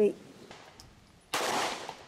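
A pistol shot about one and a half seconds in, sudden and loud, with a short tail of echo fading after it.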